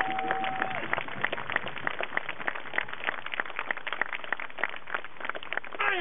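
Audience clapping: a scattering of sharp, separate claps, several a second, with a short held tone in the first second.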